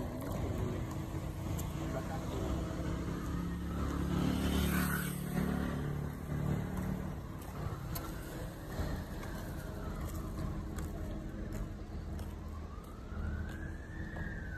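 Outdoor street noise, with a motor vehicle running nearby and heaviest for a few seconds in the first half. In the second half a faint tone rises and falls twice.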